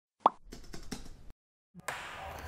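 Intro animation sound effects: a sharp pop about a quarter-second in, then about a second of quick, faint keyboard-typing clicks, and one more click near the end.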